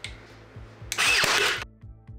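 Air nailer firing once about a second in, a short loud burst as it drives a nail through the particle-board backboard of a dresser. Background music with a steady beat runs underneath.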